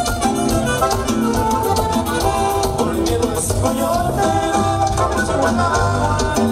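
Live Latin dance music played by a band, with a steady, even beat and melody running throughout.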